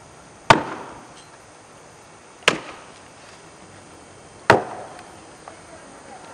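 Axe chopping into a standing log to cut a springboard pocket: three sharp strikes about two seconds apart, each dying away quickly.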